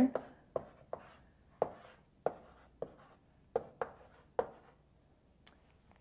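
Chalk writing on a blackboard: about ten sharp taps and short scratchy strokes at an uneven pace as characters are written. They stop about four and a half seconds in, with one faint tap after.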